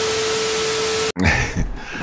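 TV static hiss with a steady beep tone under it, a glitch transition effect, cutting off suddenly about a second in.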